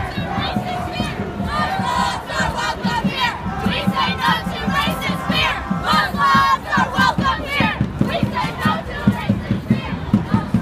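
Large crowd of protest marchers shouting and chanting, many voices overlapping at once. Near the end the shouts fall into an even, pulsing rhythm.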